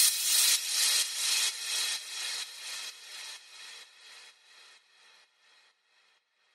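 Tail of an electronic dance track after the beat and bass drop out: a repeating hissy percussion hit, about two a second, fading away over about five seconds.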